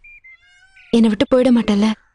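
A high voice singing a short, playful phrase of held notes, about a second long, beginning about a second in, after a faint lingering tone.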